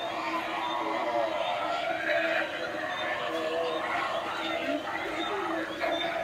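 Indistinct voices talking over a steady hum.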